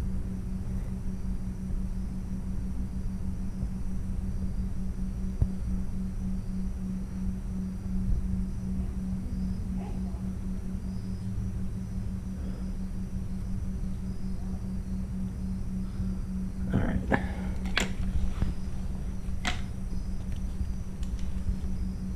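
Steady low mechanical hum with a fast, even flutter, over faint cricket chirping. A few sharp clicks come near the end.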